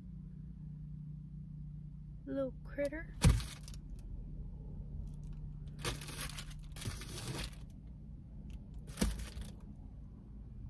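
A sharp slap about three seconds in, a hand swatting at a mosquito inside a car. It is followed by three short rustling bursts of movement, over a steady low hum that stops about seven seconds in.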